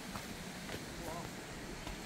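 Faint steady outdoor background noise with a few light clicks, and one brief, faint voice-like call about a second in.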